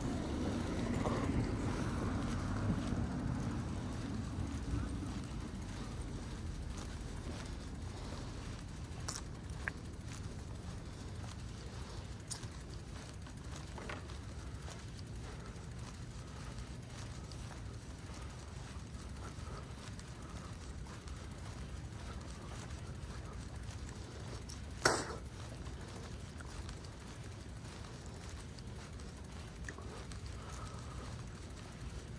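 A car passes in the first few seconds over a steady low rumble. There are a few light clicks, then one sharp clack about 25 seconds in, the loudest sound.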